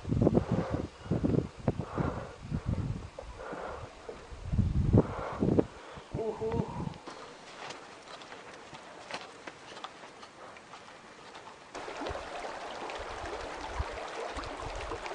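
Indistinct voices talking for the first half. Then quieter outdoor sound with a few faint ticks, and a steady rushing noise that starts shortly before the end.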